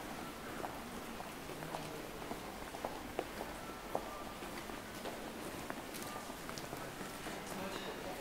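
Footsteps and sharp clicks on a hard tiled floor over a steady background murmur of a crowd.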